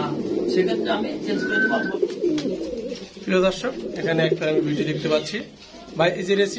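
Several domestic fancy pigeons cooing together in a small room full of cages.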